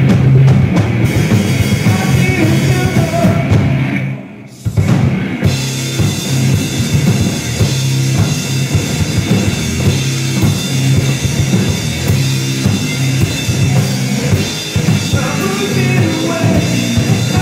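Rock band playing live: electric guitars over a drum kit, loud and continuous, with a brief break in the sound about four seconds in before the band comes back in.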